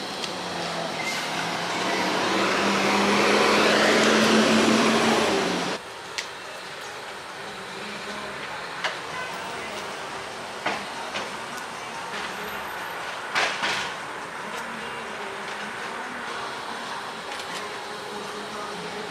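Road traffic: a vehicle's engine hum and road noise swell for about five seconds, then cut off abruptly. A steady, quieter street background follows, with a few light knocks.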